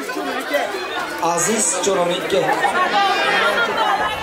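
Crowd of many people talking over one another at once, a steady babble of overlapping voices with no words standing out.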